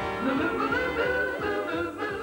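Advertising jingle: voices singing over a band, with a beat about twice a second.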